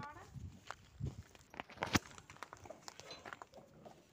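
Footsteps and scattered clicks and knocks from handling things, with one sharp click about two seconds in.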